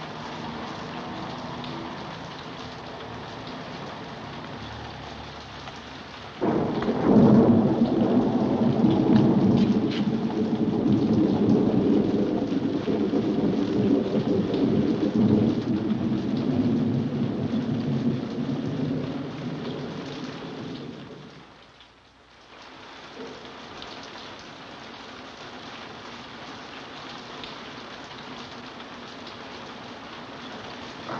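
Steady rain, broken about six seconds in by a sudden loud clap of thunder that rolls on for some fifteen seconds before fading away, after which the rain carries on.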